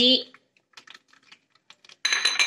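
Shallots, garlic and ginger just dropped into hot oil in a clay pot, the oil crackling with faint, scattered pops.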